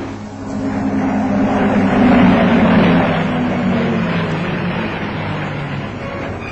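Piston-engined propeller aircraft flying low overhead. The engine drone swells to a peak a couple of seconds in, then falls slightly in pitch and fades as they pass.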